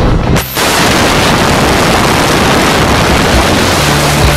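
Loud, even rush of wind roaring on the camera microphone at an aircraft's open jump door. It starts abruptly after a brief drop about half a second in.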